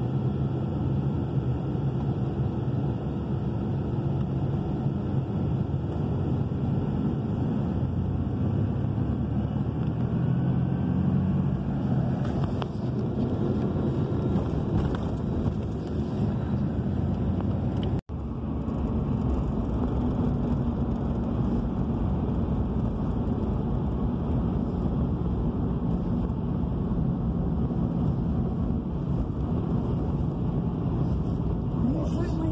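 Steady road and engine noise of a car, heard from inside while it drives. The sound drops out for an instant about eighteen seconds in.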